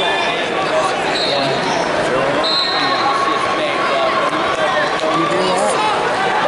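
Crowd in a large arena, many voices shouting and talking over one another, with a few short, high whistle blasts cutting through.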